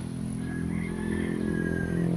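Steady low hum of an engine running nearby, even in pitch with no revving. A faint thin high whine joins it about half a second in.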